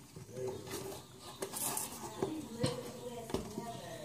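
Quiet handling of a cardboard baking soda box and glass containers as more baking soda is added: a few light, sharp taps and clinks, most of them in the second half.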